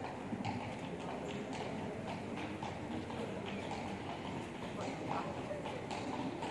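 Hard steps clicking on stone paving, about two or three a second, over the murmur of passers-by talking.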